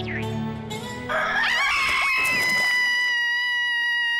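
Rooster crowing: one long call that starts about a second in, rises, then holds steady at a high pitch. It comes over a short stretch of background music in the first second or so.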